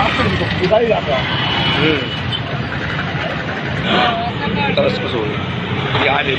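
Street traffic: motorcycles running slowly past on a broken road, with people's voices in the background.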